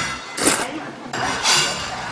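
A person slurping Pyongyang naengmyeon noodles from a metal bowl, two slurps about a second apart.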